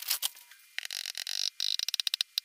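A few light clicks, then soft hissing scrapes as all-purpose flour is scooped and poured from a measuring cup into a plastic mixing bowl.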